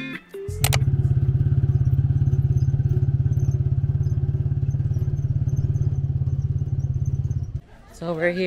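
Small motorcycle engine running steadily at an even speed, its exhaust pulsing fast and low, cutting off suddenly about half a second before the end.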